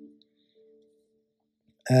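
A pause in a man's talk: his voice trails off into a faint held tone at the start, then near silence, and he starts speaking again near the end.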